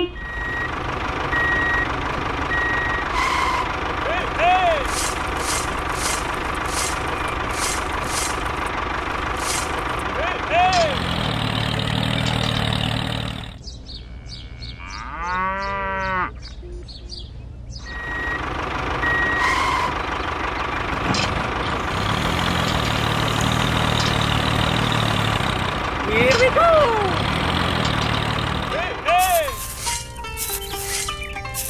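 Added sound-effect track: a steady vehicle drone with a run of short reversing beeps at the start and a few short rising-and-falling calls. About halfway through there is a break with a bouncing glide, then the same sequence plays again from the top.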